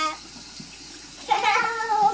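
A high-pitched, drawn-out vocal cry beginning about a second and a half in, holding its pitch and then falling away.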